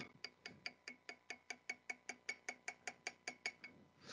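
Faint, even metallic ticking, about six short ticks a second, from a small mechanism.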